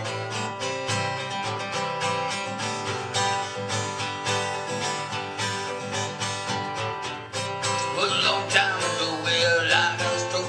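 Acoustic guitar strummed steadily in a solo folk-country song, with a wordless vocal line coming in about eight seconds in.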